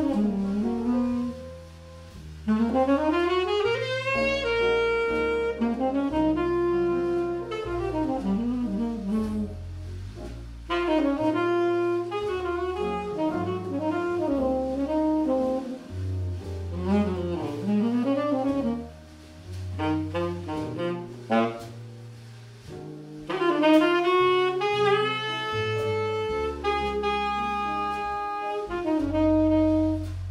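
Jazz saxophone playing a line of bending, sliding phrases over a stepping bass line, with short breaks between phrases.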